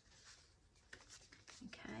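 Faint rustling and a few light taps of old book-page paper being handled and pressed down on a tabletop.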